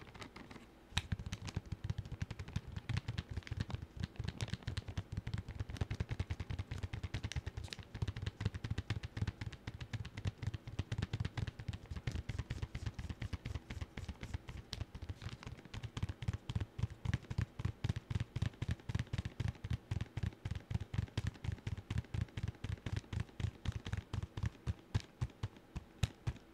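Fast, irregular ASMR tapping with fingers close on the microphone, several sharp taps a second with a dull thud to each, starting about a second in.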